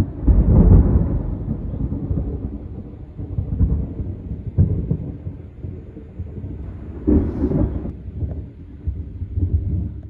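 Thunder rumbling through a lightning storm: a deep rolling rumble, loudest about a second in, with a sharper crack near the middle and another swell around seven seconds.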